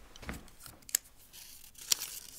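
A small folded slip of paper being unfolded by hand: faint rustling with two sharp crinkles, about a second apart.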